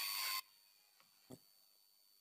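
Steady microphone hiss with a faint high whine, cutting off abruptly about half a second in to dead silence as the screen recording is paused. One faint click follows.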